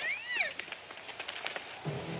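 A single short, high-pitched cry that rises and then falls, followed by a few faint clicks. Music begins near the end.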